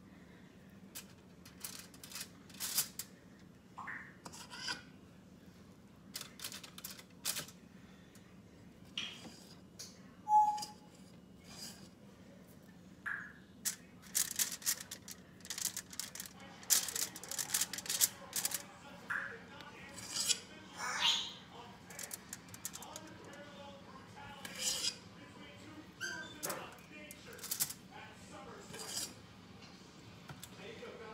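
Spoon clicking and scraping as cookie batter is dropped in small mounds onto a foil-lined baking sheet: a run of scattered short clicks and scrapes, busiest in the second half.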